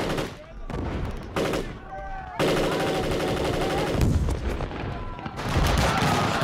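Several go-kart engines running together, their revs rising and falling with a rapid buzzing, rattling firing. The sound changes abruptly a few times.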